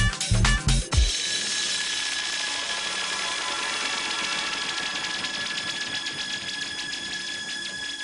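Electronic dance music from a DJ set: the steady kick drum drops out about a second in, leaving a breakdown of sustained high synth tones over fast ticking hi-hats.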